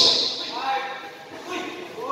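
Indistinct voices and shouts echoing in a covered basketball court, with the louder crowd sound dying down in the first half second.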